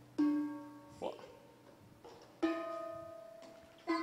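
Bronze drums struck with the palm, three strokes, each giving a ringing metallic tone with several overtones that slowly fades. The second drum sounds a different tone from the others.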